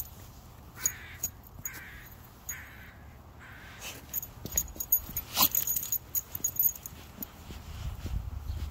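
A bird calling four times, harsh hoarse calls evenly spaced a little under a second apart. Just past the middle come a run of light metallic clinks and jingles from the dog's collar and leash hardware as the dog moves off.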